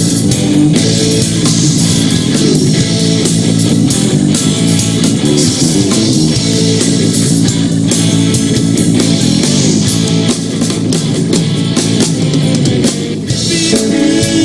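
Live rock band playing an instrumental passage: electric guitar over a drum kit and bass guitar, loud and steady.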